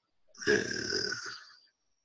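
A person's single long breathy exhale, starting about half a second in and fading out.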